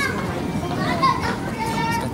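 A young child's high-pitched wordless vocalizing in short, bending sounds, with one held note near the end.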